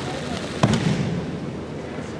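Aikido breakfall (ukemi) on tatami mats: one sharp slap of body and hands striking the mat a little over half a second in, ringing on in the reverberation of a large hall.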